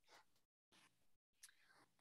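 Near silence: a pause between speakers in a video-call recording, with only a couple of very faint, brief traces.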